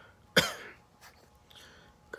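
A man coughs once, sharply, about half a second in.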